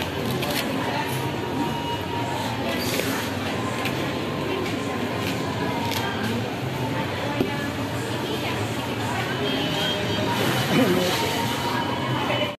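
Supermarket ambience: indistinct chatter of shoppers, with music playing in the background and occasional small clicks and knocks.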